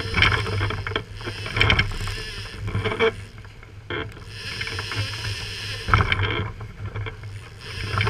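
Twin outboard motors running at trolling speed with a steady low hum, under the rush of the churning wake and water along the hull. Wind buffets the microphone in irregular gusts.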